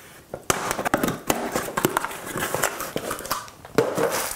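Cardboard shipping box being opened by hand: irregular crackling, tearing and rustling of packing tape and cardboard flaps, starting about half a second in.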